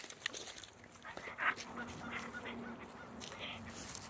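A dog biting and gnawing on a wooden stick in a tug: irregular sharp clicks and crunches of teeth on wood, with one louder sound about one and a half seconds in.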